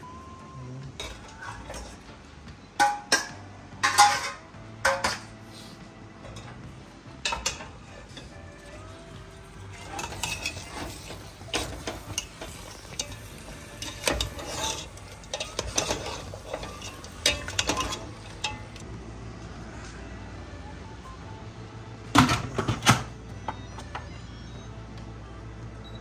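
Metal spoon clanking and scraping against a stainless-steel pot as chunks of seasoned meat are moved and stirred in it: a string of irregular knocks and scrapes, with the loudest clanks near the end.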